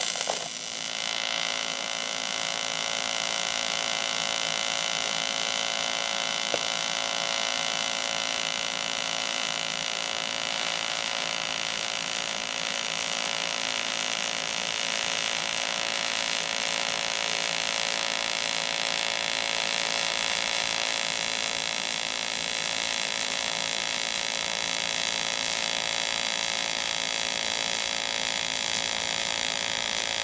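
AC TIG arc from an Everlast PowerTig 250EX welding aluminium: a steady buzzing hum that starts abruptly as the arc is struck and holds evenly throughout.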